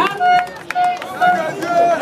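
An amplified voice chanting four short held notes, about two a second, through a loudspeaker.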